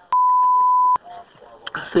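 A single steady electronic beep, one pure high tone lasting just under a second that clicks on and off sharply, in a recorded 911 phone call, typical of a bleep laid over the recording.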